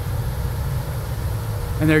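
Steady low drone of a power plant's wet surface air coolers running, with a faint steady hum over it.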